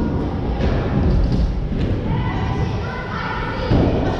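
Wheelchair wheels rolling over a concrete skatepark floor, a continuous low rumble, with a heavy thud near the end.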